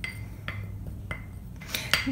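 Metal spoon clinking against a small glass bowl while stirring powder: a few light clinks about half a second apart, with a quicker cluster near the end.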